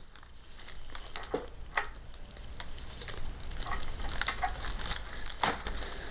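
Light handling noise from the cooler and its packaging: scattered soft clicks and rustling, over a low steady hum.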